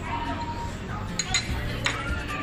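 Utensils clinking against a bowl and a metal hot pot: three sharp clinks in the second half, over a steady low room hum.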